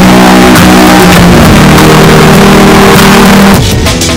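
Loud, distorted electronic dancecore music: a dense noisy wall over held low notes that step in pitch. Near the end it drops back to drums.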